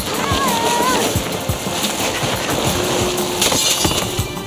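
Cartoon soundtrack: a short pitched cry in the first second, then a rushing whoosh with scattered low thuds, over background music.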